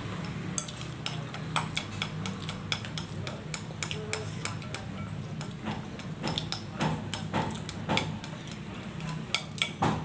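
Wooden chopsticks clicking and scraping against disposable bowls as two people eat noodles: many short, irregular clicks throughout.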